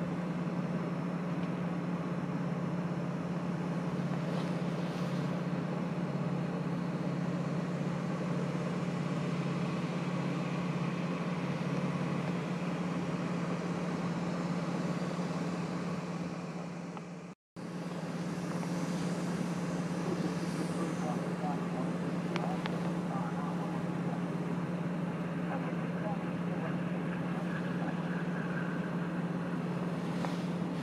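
British Airways Boeing 787-8's Rolls-Royce Trent 1000 engines running at taxi power as the airliner rolls along the taxiway, a steady hum and rush. The sound cuts out for an instant about seventeen seconds in.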